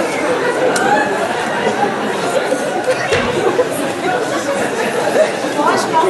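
Several voices talking at once, indistinct and overlapping.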